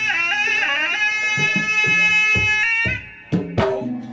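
Traditional pencak silat accompaniment: a reedy wind instrument plays long, slightly wavering notes over hand-drum strokes. The melody drops out about three seconds in, and the drum strokes then pick up again.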